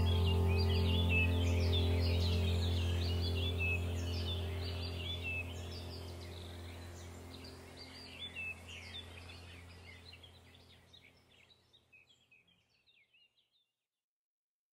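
Ambient music track: a steady low drone with birds chirping over it, the whole fading out slowly to silence near the end.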